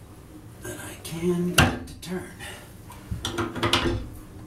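Steel pipe wrench and wrecking bar clanking and clicking against a stuck bathtub drain flange as the flange is forced to turn, with one sharp metallic knock about a second and a half in and a quick run of clicks near the end. Short low voice sounds of effort come between the knocks.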